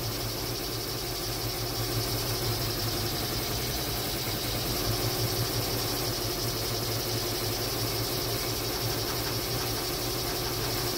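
Embroidery machine running steadily in the background, stitching a design: an even, continuous mechanical hum with a fast, regular chatter.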